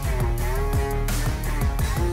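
Background music with a steady beat and guitar.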